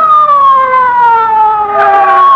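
Police car siren sound effect on an old-time radio drama soundtrack. Its wail slides slowly down in pitch, and a second siren tone comes in near the end.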